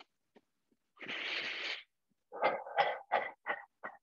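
A person's forceful breath out through the mouth, lasting under a second, followed by a run of short voiced huffs about three a second that grow shorter and fainter, in time with bouncing and shaking the body.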